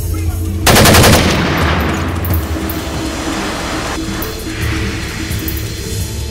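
A burst of rapid automatic gunfire under a second in, dying away over the next two seconds, then a weaker rush of noise about four seconds in, over steady background film music.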